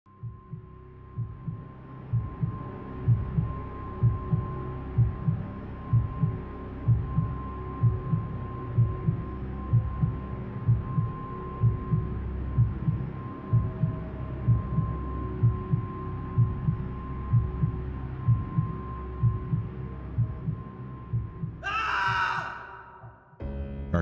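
Horror film sound design: a slow heartbeat pulse of low thumps, about one a second, under a steady high tone and a low drone. Near the end a loud, falling, pitched shriek cuts across it.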